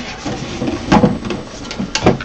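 A resin printer being slid and shifted across a bench: a rough scraping with a knock about a second in and another near the end.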